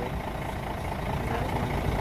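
Tour coach's diesel engine idling, a steady low rumble.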